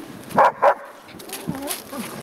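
A dog barking twice in quick succession, two short sharp barks about half a second in.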